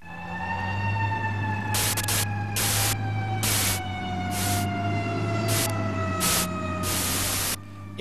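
A fire-engine siren winding down, its tone falling slowly and steadily in pitch, over a low hum. About seven short bursts of hiss come at uneven intervals through the second half.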